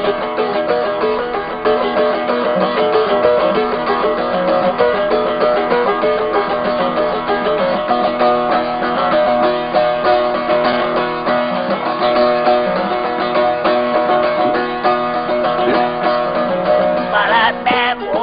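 Turkish bağlama (long-necked saz) playing an instrumental passage: quick plucked notes over steady ringing strings. A voice comes in singing near the end.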